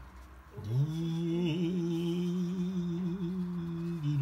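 A man humming one long, steady low note, sliding up into it about half a second in.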